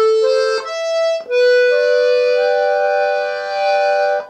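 G/C two-row button melodeon playing the notes of an A minor chord on the bellows pull: A, C and E sounded one after another in the first second or so, then several notes held together as a sustained chord.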